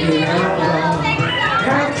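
A crowd of many voices talking and shouting over one another, with a karaoke backing track playing underneath.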